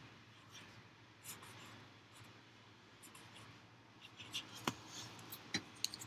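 Felt-tip Sharpie marker writing letters on paper: faint, soft scratchy strokes. A few sharp clicks near the end as the marker and its cap are handled.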